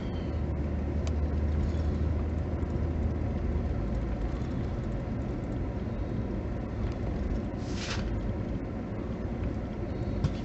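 Low, steady rumble of a car's engine and tyres heard from inside the cabin while it creeps along slowly in traffic, with a brief rushing noise about eight seconds in.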